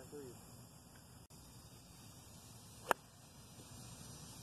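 A golf club striking the ball off the tee: one sharp, short crack about three seconds in.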